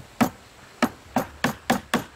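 Hammer striking wooden planks set in a wooden frame: about seven sharp knocks at uneven intervals, two close together at the start and the rest in a quicker run from about a second in.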